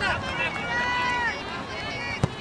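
Sideline spectators shouting during play: several high voices overlap, with one long held call about halfway through.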